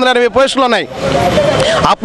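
A man speaking into a handheld microphone, then about a second of road traffic noise from a passing motor vehicle as he pauses, before his voice returns.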